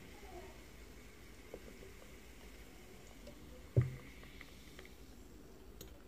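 Cola poured from a can into a glass, fizzing softly, with one sharp thud about four seconds in as something is set down on the table.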